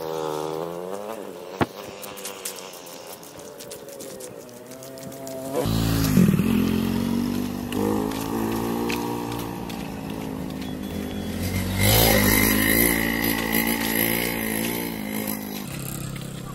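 Motor vehicle engines running and revving, their pitch rising and falling. A single sharp click comes about a second and a half in. A louder engine comes in suddenly about six seconds in, dips and climbs in pitch, and swells again around twelve seconds, as a motorcycle does when passing close.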